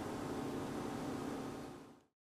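Steady kitchen room noise with a faint low hum, fading out to silence near the end.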